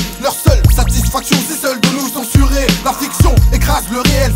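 Hip hop track: a rapper's voice over a beat with a heavy, repeating bass line.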